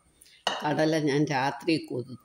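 Steel pressure cooker handled on a countertop, with a sudden clink about half a second in, followed by a person speaking for about a second.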